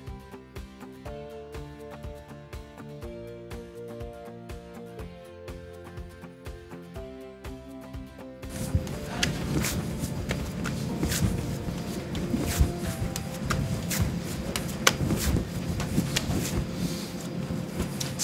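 Light background music with plucked-string notes. About halfway through it gives way to louder sound of hands kneading pizza dough on a marble counter: irregular pressing, slapping and rubbing knocks, with the music faint beneath.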